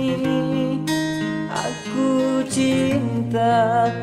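A man singing with long held, wavering notes over acoustic guitar accompaniment.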